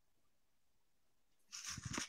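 Near silence on a video call whose guest audio has dropped out over a failing internet connection, then a brief breathy rustle about one and a half seconds in.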